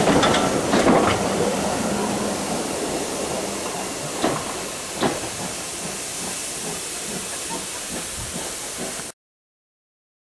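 Steam-hauled heritage train running along the track, heard from an open carriage window: a steady rumble with wind noise and a few sharp clicks from the wheels. It is loudest at the start, as the coaches of a passing train go by, then slowly fades, and cuts off suddenly about nine seconds in.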